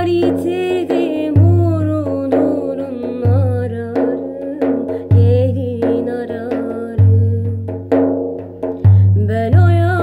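Bendir frame drum played by hand: deep open bass strokes roughly every two seconds, with lighter taps between them. Over it a woman sings a long, ornamented melodic line.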